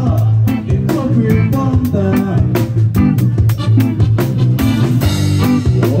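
A live reggae band playing an instrumental passage: drum kit keeping a regular beat, electric guitar and keyboard over a strong bass line, loud. A singer comes in at the very end.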